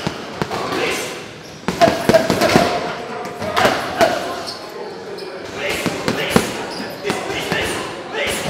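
Boxing gloves punching a heavy bag, each blow a sharp thud, thrown in quick clusters of several punches, loudest about two seconds in.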